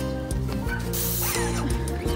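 Background music, with a brief hiss of an airless paint sprayer about a second in.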